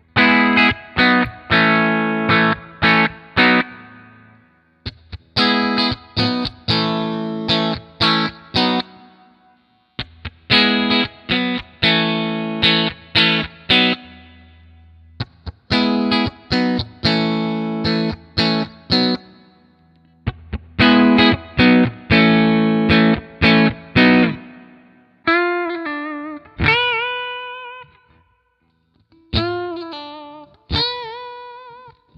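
Ibanez RG350DXZ electric guitar with distortion, played through an IK Multimedia Tonex amp-modelling pedal: the same short riff of struck chords is played five times, with a brief pause after each, as the pickup selector steps through its positions. About 25 seconds in it changes to a few single held notes with vibrato.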